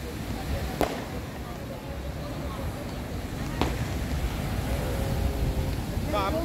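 Two sharp firework pops, about three seconds apart, over a steady low rumble of surf and wind on the microphone.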